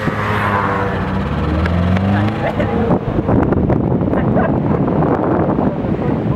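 A motor vehicle engine running for about the first two seconds, its pitch shifting as it goes, then steady wind noise on the microphone.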